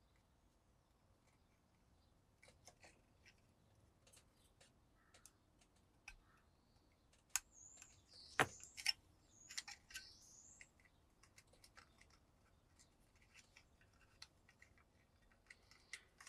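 Hobby scalpel cutting and scraping flash off a thick styrene plastic model part: faint scattered clicks and scratches, busiest and loudest around the middle, with a few brief high squeaks there.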